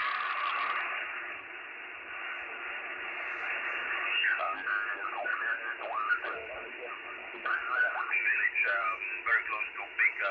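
Xiegu X6100 HF transceiver's speaker playing 20-metre band static in upper sideband while it is tuned, with a louder burst of hiss in the first second. From about four seconds in, a distant station's thin, narrow voice comes through the noise.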